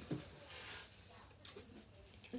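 Faint, scattered soft knocks and rustles, three or so over two seconds, of someone handling small objects, over quiet room tone.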